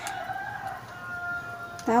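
One long drawn-out bird call, held at a steady high pitch for nearly two seconds and stepping down slightly about halfway, with a click at the start.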